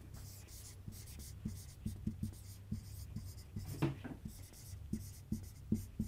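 Dry-erase marker writing on a whiteboard: a string of short, faint strokes and taps, over a low steady room hum.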